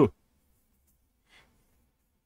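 A man's short "ooh", falling in pitch, right at the start. Then near silence, with one faint breath about a second and a half in.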